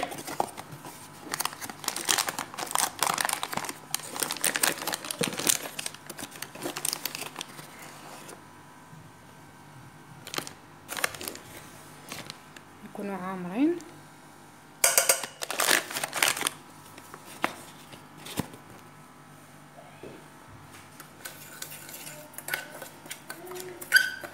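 Packet of crème pâtissière powder crinkling and rustling as it is opened and emptied into a stainless steel saucepan, in several bursts: a long stretch of crackling at first, then shorter bursts later on.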